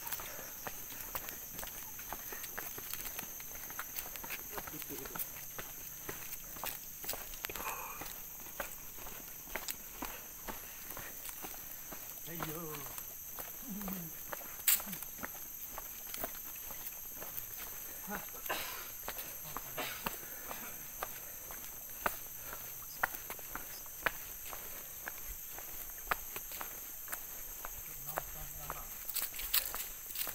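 Footsteps of several people walking on a paved trail scattered with dry leaves, a steady run of scuffs and light crunches, with faint voices now and then in the distance.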